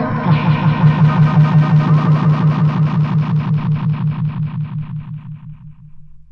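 Lo-fi electronic music with a low synthesizer tone stuttering in rapid even pulses, about six a second, that die away toward the end as the track closes.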